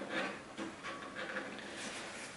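Faint rustling and scratching as fingers pick at a strip of paper tape on the mesh front of a PC case and start peeling it off.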